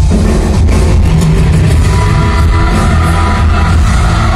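Live rock band playing loudly through an arena sound system, heard from high in the stands, the full band at a steady high volume.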